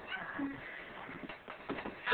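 A baby's short, faint, high-pitched vocal sounds, cat-like squeaks and coos, with a few soft knocks.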